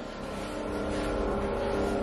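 Steady low rumble of background noise, slowly getting louder.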